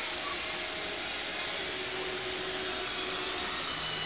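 Steady mechanical hum and hiss of a Disney Resort Line monorail train standing at the platform with its doors open, its onboard equipment running.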